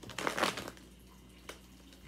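A tarot deck being shuffled by hand: a brief papery rustle of the cards in the first half-second, then a single light tap about a second and a half in.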